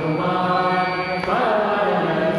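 Dhrupad vocal singing in the slow, syllabic alap style: one held note that bends in pitch a little past halfway, over a steady sustained drone.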